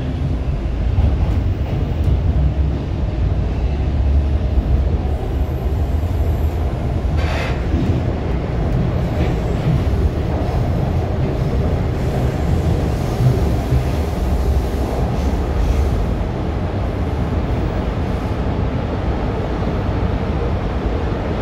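Toronto TTC T1 subway car running through the tunnel just after leaving a station, heard from inside the car: a steady low rumble of steel wheels on rail, with a brief louder rattle about seven seconds in.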